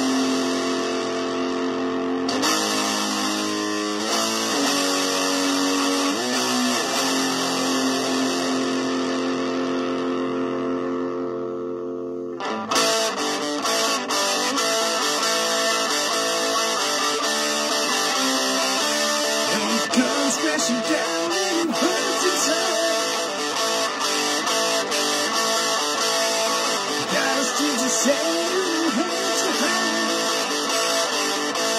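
Electric guitar playing a WWE entrance theme: held chords that slowly fade over the first dozen seconds, then a new, busier riff that starts abruptly and runs on.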